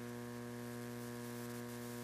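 Steady electrical mains hum with a stack of overtones, running unchanged.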